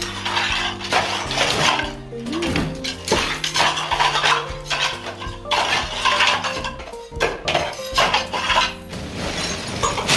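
Loose ceramic floor tiles clinking and clattering against each other as they are pried up and dropped, in repeated sharp knocks, over background music.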